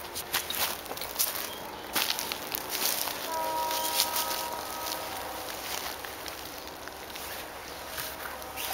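Footsteps crunching on dry straw mulch, with the rustle of a cloth frost cover being handled and a plastic cloche being lifted off a plant. About three seconds in, a steady chord of several pitches holds for about a second and a half.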